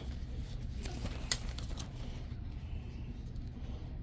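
Faint handling of a small fabric stick flag as it is pulled from a crowded store display, over a steady low background hum, with one sharp click a little over a second in.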